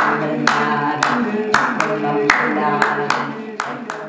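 A group of voices singing a repeated vocal loop on held notes, with hand claps keeping an uneven rhythmic pattern of two to three claps a second; it all fades out near the end.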